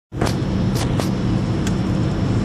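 Steady road and engine rumble inside a moving car's cabin at highway speed, with four light clicks scattered through it.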